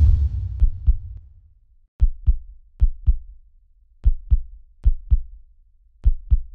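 Heartbeat sound effect: low double thumps (lub-dub) in five pairs, each pair about a second after the last. A low rumble fades out over the first second or so.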